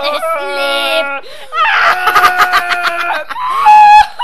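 A person's voice letting out long, wild cries and cackling laughter, with a loud, held cry near the end.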